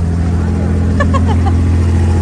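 Diesel engine of a wooden abra water taxi running with a steady low hum while the boat is held at the pier, with faint voices about halfway through.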